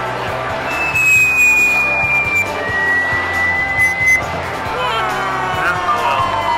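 Arcade game machines' electronic music and sound effects: two long held high beeps, one after the other, in the first half, then sweeping electronic tones near the end over a steady bed of music.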